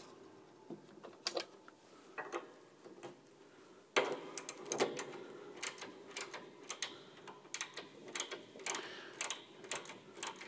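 Ratchet wrench clicking as it turns a piano tuning pin, winding the new steel string's coil onto the pin to bring the wire up toward tension. A few separate clicks at first, then a quick irregular run of clicks from about four seconds in.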